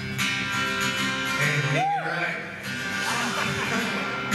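Live band starting a song intro, with guitar and sustained chords. About halfway through, a single note bends up and back down.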